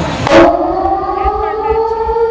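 A loud sweeping hit about a third of a second in, then a siren-like electronic tone that slowly rises in pitch, played over the show's sound system as part of its electronic music.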